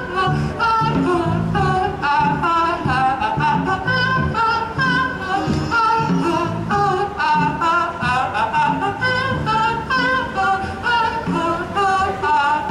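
Live band music: a man singing lead over piano accordion, electric bass guitar and drums, with a steady beat.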